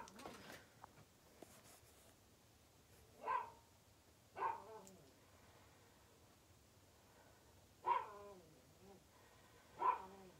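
A dog barking faintly four times, spaced one to three seconds apart, each bark trailing off in a falling whine.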